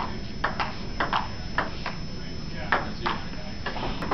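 Ping-pong ball clicking off paddles and the table during a rally: about ten short, sharp clicks at an uneven pace, roughly two or three a second.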